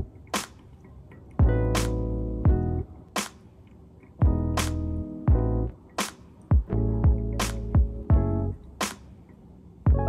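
Background music with a slow, steady beat: a kick drum and a crisp snare under held keyboard chords, in phrases about a second and a half long.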